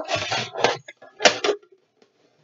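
Toys and a cardboard box being handled and knocked about: a rustling clatter, then a second short burst of knocks about a second and a quarter in.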